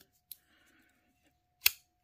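Petrified Fish PFE02 front-flipper folding knife flipped open: a faint click near the start, then one sharp snap about one and a half seconds in as the blade swings out and locks. With the pivot just readjusted, the action is snappy.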